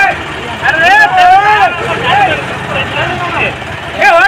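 Voices calling out loudly over a tractor engine running steadily.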